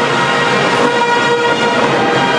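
Orchestral music with brass instruments holding a sustained chord.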